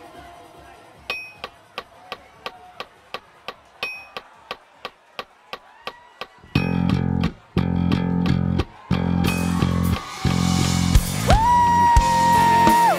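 A metronome click track in an in-ear monitor mix, ticking about three times a second, with a louder pitched click every few seconds. About six and a half seconds in, the band comes in with the bass guitar loudest, playing stop-start hits, and a high note is held near the end.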